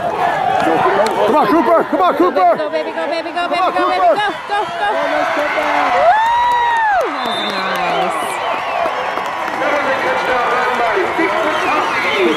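Football spectators shouting and cheering over one another during a scoring play, a two-point conversion catch. About six seconds in, one voice gives a long yell that rises, holds and then falls away.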